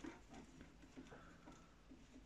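Near silence: room tone with a few faint small clicks and taps from hands seating a router bit in a table-mounted router's collet.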